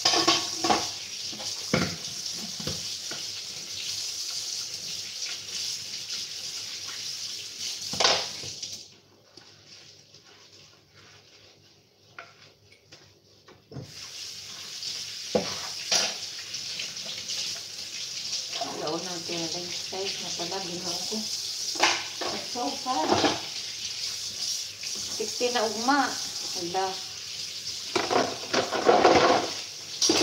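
Kitchen tap running into a sink while dishes are washed by hand, with clinks and knocks of crockery and utensils. The water shuts off for about five seconds around a third of the way in, then runs again.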